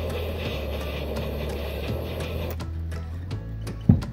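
Kitchen torch flame running with a steady hiss as it lights applewood chips in a cocktail smoker, shut off suddenly about two and a half seconds in. A sharp knock follows near the end.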